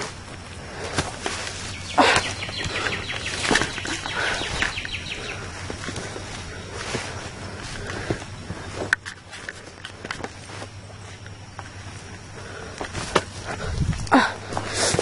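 Footsteps on a dirt woodland trail, with dry leaves and twigs crunching underfoot at an uneven pace.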